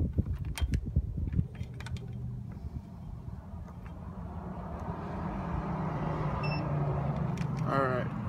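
A motor vehicle engine running nearby, slowly growing louder, with handling clicks and knocks in the first second and a single short beep near the end.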